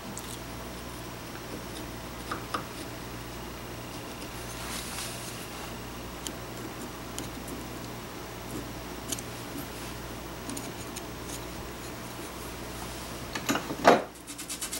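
Hand chisel paring excess solder off a steel rifle barrel beside a soldered tenon: faint, scattered scrapes and ticks of steel on metal over a steady shop hum, with one louder knock just before the end.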